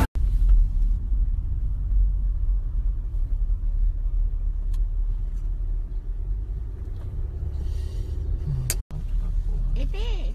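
Low, steady rumble of a car heard from inside the cabin, engine and road noise, with a brief cut-out about nine seconds in.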